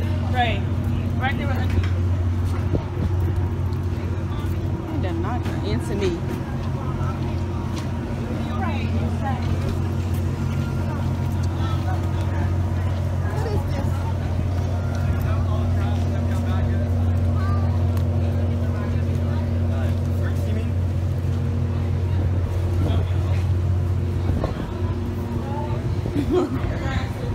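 A steady low engine hum that stops near the end, with faint voices of people around.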